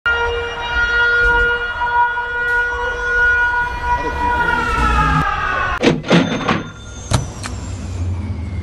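Sound-design intro: a held, buzzy note made of several tones over a low rumble, sliding down in pitch like a power-down about four to six seconds in, then a few sharp glitchy hits.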